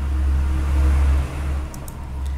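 A low, steady rumble that swells through the middle and eases off toward the end, with a few faint clicks near the end.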